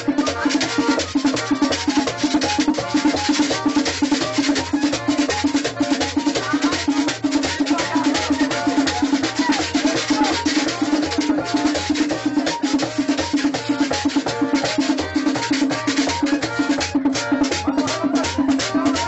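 Live festive drumming at a fast, steady beat, a cord-tensioned hand drum driving the rhythm with dense, rattling percussion on top and voices in the mix.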